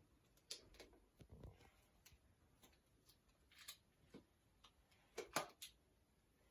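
Faint scattered clicks and light knocks of small plastic toys being handled, with a soft thud about a second and a half in and a cluster of louder clicks near the end.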